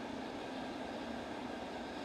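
Steady faint background hiss with a low hum and no distinct sound events: room tone.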